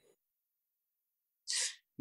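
Near silence, then a single short sneeze from the lecturer about a second and a half in.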